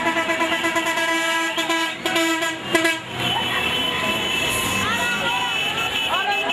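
Vehicle horns in a convoy sounding in long, steady blasts for about three seconds, with brief breaks around two seconds in. After that, the horns give way to voices with rising and falling calls.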